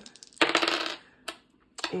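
Dice rattled in the hand and rolled onto a tabletop: a few small clicks, then about half a second of clattering, and one last click a little after a second in.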